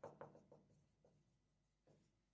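Near silence, with a few faint strokes of a marker writing on a whiteboard in the first half second.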